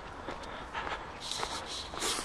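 Footsteps of a person walking on a paved pavement, picked up by a handheld camera, with a rushing hiss for the last second or so.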